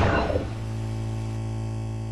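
Logo-intro sound effect: a synthesized low hum with steady tones above it, held and slowly fading, while the tail of a falling sweep dies away in the first half second.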